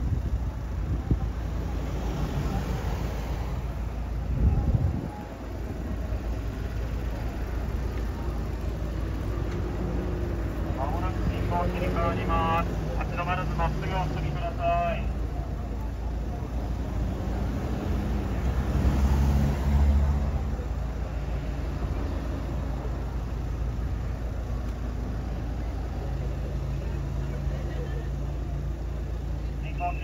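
Low rumble of city shuttle buses' diesel engines idling and pulling away through a junction, swelling briefly twice as buses move off close by.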